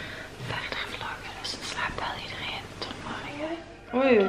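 A woman talking in a whisper.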